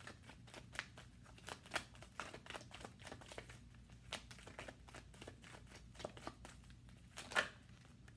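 Tarot deck shuffled by hand: a faint, irregular run of soft card clicks and flicks, several a second, with a few sharper snaps, the strongest about seven seconds in.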